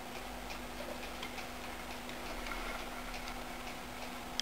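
Young fancy mice scampering over wood shavings and a plastic tub: light, irregular clicks and scratches of their small claws, over a steady low hum.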